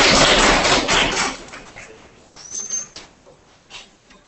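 Audience applause that dies away about a second in. It is followed by a few scattered faint knocks and a brief high squeak.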